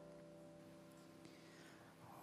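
Near silence: the last of a held piano chord dying away.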